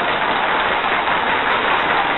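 Loud, steady rushing hiss with no pitch, an editing sound effect laid over a rotating slide transition.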